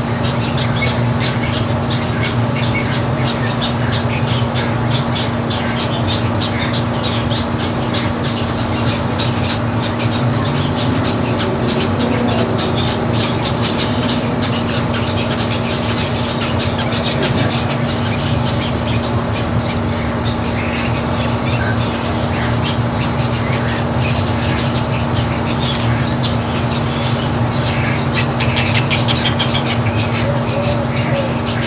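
Wading birds in a nesting rookery calling all the time, many short overlapping squawks and chatter, over a steady low hum.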